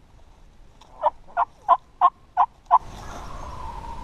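A series of six loud, evenly spaced turkey yelps, about three a second, in the rhythm of a hen's yelp sequence. A steady low rumble follows near the end.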